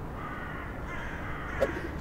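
A crow gives a faint short caw about one and a half seconds in, over a steady low outdoor rumble; louder cawing lies just either side.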